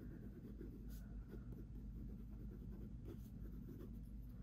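Gel-ink rollerball pen writing on notebook paper: faint scratching of short handwriting strokes as the pen glides smoothly across the page.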